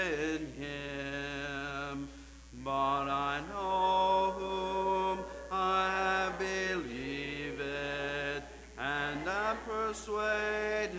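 A male song leader and congregation singing a hymn unaccompanied, in slow phrases of long held notes with short breath pauses between them.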